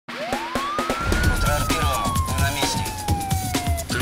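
A single siren wail that rises quickly and then slides slowly down in pitch, set in a programme's intro theme music. A thumping beat with heavy bass comes in about a second in.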